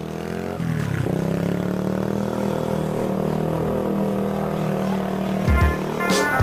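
Small motorbike engine running steadily, dipping in pitch briefly about a second in. Music with a drumbeat comes in near the end.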